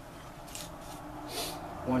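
A ferrocerium rod scraped with a striker to throw sparks onto tinder: three short scrapes, the loudest about a second and a half in.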